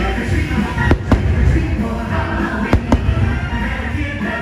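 Aerial fireworks bursting: four sharp bangs in two close pairs, about a second in and again near three seconds in, over a continuous music soundtrack.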